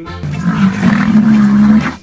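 Rhinoceros call: one rough, drawn-out call lasting about a second and a half, over background music.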